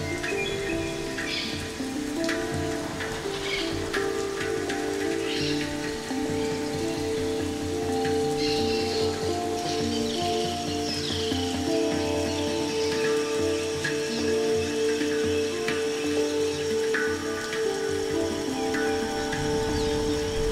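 Slow ambient electronic meditation music: sustained synth chords that shift gently, layered with forest ambience of scattered bird chirps and a soft, rain-like patter. A bird's falling whistle sounds about halfway through.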